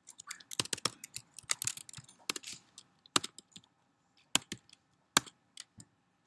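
Typing on a computer keyboard: a quick run of key clicks for the first couple of seconds, then single keystrokes spaced about a second apart.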